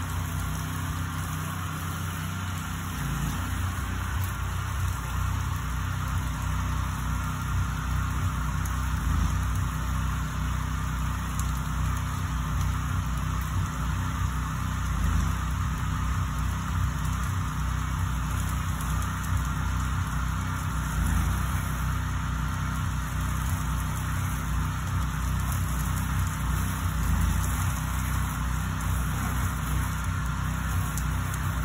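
The small gasoline engine of a soft-wash pressure-washing rig runs steadily at an even speed, with the hiss of water spraying from the hose on top.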